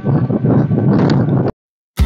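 Strong wind buffeting the microphone outdoors, a loud, gusty rumble that cuts off abruptly about one and a half seconds in.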